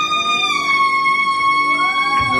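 A woman's voice holding one long, high final note of a song, dipping slightly in pitch about half a second in, with the accompaniment faint beneath.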